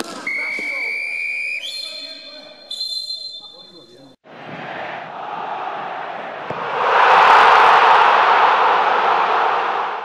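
Referee's whistle blown in three long blasts, each higher than the last, over the first four seconds of indoor futsal play. After a cut comes a steady rushing noise that swells louder about seven seconds in.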